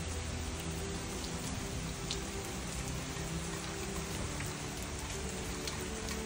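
Steady rain coming down on trees, lawn and garden beds, the rain just starting to come down hard.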